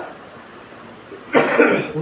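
A man coughs once, a short, loud cough about a second and a half in.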